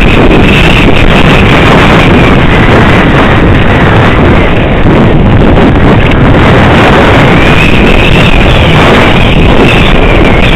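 Wind buffeting a helmet camera's microphone during a fast downhill mountain-bike descent: loud and unbroken. A faint high whine rises and falls near the start and again about eight seconds in.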